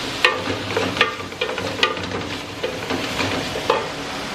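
Diced pork rump and calabresa sausage sizzling as they fry in an aluminium pot, with a wooden spoon stirring and knocking against the pot several times.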